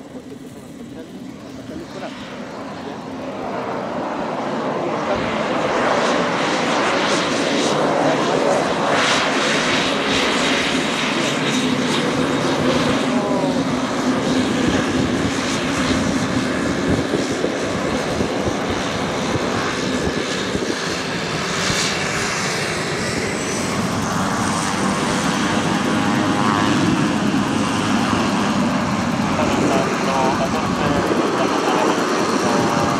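Air Tractor AT-802 turboprop engine and propeller running as the plane taxis close by. The sound grows louder over the first six seconds, then stays steady and loud.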